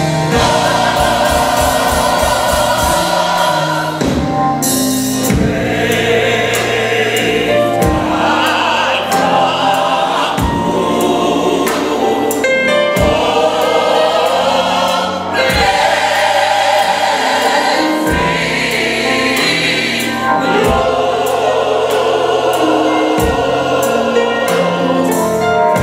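Gospel mass choir singing live in full harmony, backed by a band with keyboards, bass and regular drum hits.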